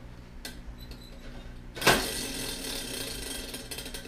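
Plastic spinner wheel on a Bean Boozled jelly bean tin, flicked and spinning. A sharp start about two seconds in, then a fast run of ratcheting clicks for about two seconds until the wheel stops near the end.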